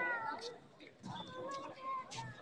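High-pitched shouting voices during a karate bout: one call at the very start and another drawn-out call from about a second in.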